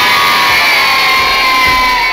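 A group of women cheering together in one loud, held shout. It fades out just after the end.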